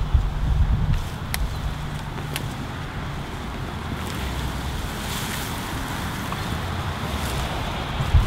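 Wind rumbling on the microphone over a steady rushing hiss, with two faint clicks about a second apart.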